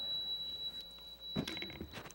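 A faint, steady, high-pitched electronic tone like a beep, held for about a second before it fades out, followed by a brief soft murmur of a voice.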